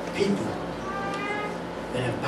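A man preaching into a handheld microphone in short bursts; about a second in, a brief high-pitched held tone with a steady pitch lasts about half a second.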